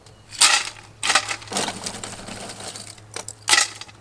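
Cooked, dried oyster shells being cracked and crunched apart by hand over a metal pot: several sharp cracks, the loudest about half a second in and another near the end.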